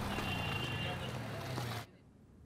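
Street ambience of vehicles and indistinct background voices, which cuts off abruptly near the end.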